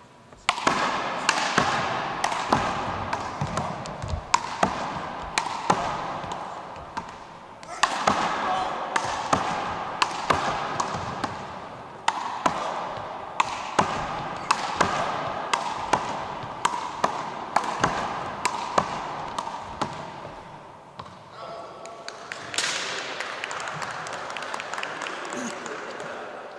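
Rubber big-ball handball struck back and forth in a one-wall rally: repeated sharp smacks of the ball off hands, the wall and the hardwood floor, several a second, ringing in a reverberant gym. Voices run over the play, with short lulls between rallies.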